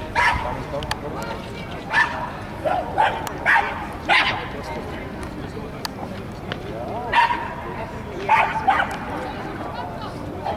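A dog barking: about nine short, sharp barks in uneven groups, over a background murmur of voices.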